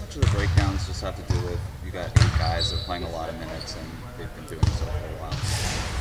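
Basketballs bouncing on a hardwood gym floor, several thuds at uneven intervals, under a faint off-mic question from a reporter.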